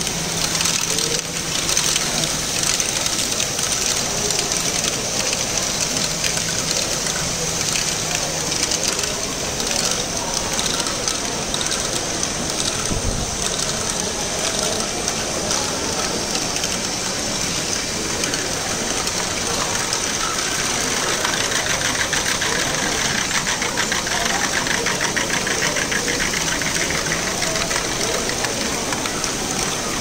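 LEGO Great Ball Contraption modules running: small electric motors and plastic gears whirring, with steady dense clicking and clattering of plastic balls through the lifts and chutes, over the background chatter of a crowd in a large hall.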